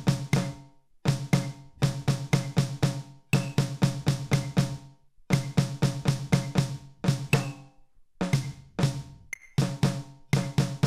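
A drum struck with wooden drumsticks, playing a reading-rhythm exercise that mixes note values: runs of single strokes, about three to four a second, broken by short rests. Each stroke rings with a short, low, pitched tone.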